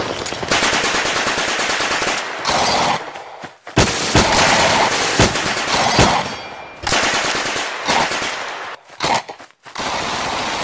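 Automatic gunfire in long, rapid bursts, with a short lull about three seconds in and another near the end, broken by single sharp shots.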